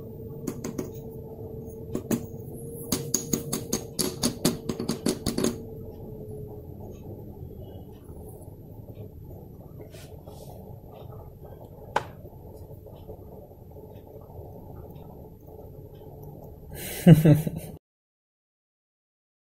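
A run of sharp clicks in quick succession for the first five seconds or so, then quiet room noise with one more sharp click later on, and a short laugh near the end.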